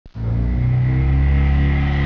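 Steady engine drone with a low pulsing beat and a high whine above it, starting abruptly a moment in.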